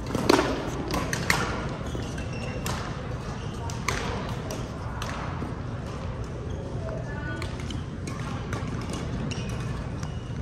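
Badminton rally: a shuttlecock struck by rackets with sharp cracks a second or so apart over the first five seconds, the loudest just after the start. Short high squeaks of court shoes on the floor come in between.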